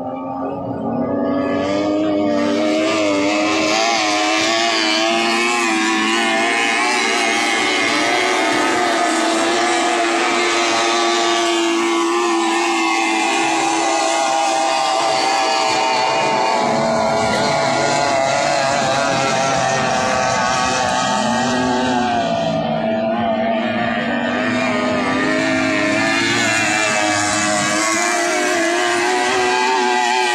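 Racing outboard engines of 30 hp three-cylinder powerboats running flat out, a continuous wavering high whine that builds in the first couple of seconds. The pitch climbs about two-thirds of the way through as the engines rev higher.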